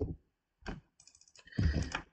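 Computer keyboard keystrokes: single clicks at the start and a little later, then a quick cluster of presses near the end.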